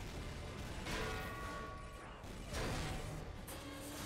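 Cartoon soundtrack playing quietly in the background: music under the crashes and clangs of a giant-robot fight.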